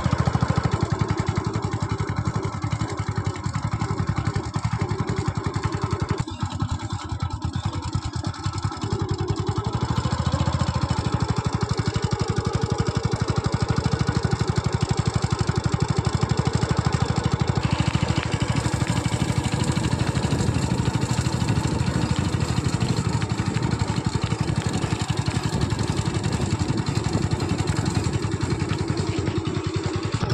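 Steady engine and road noise of a moving vehicle, heard from on board, easing off for a few seconds about six seconds in.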